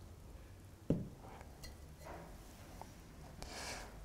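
A quiet room with one soft knock about a second in, an earthenware teapot being set down on the table, then a few faint clicks.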